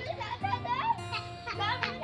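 Young children's high-pitched calls and squeals as they play, over background music with long held notes.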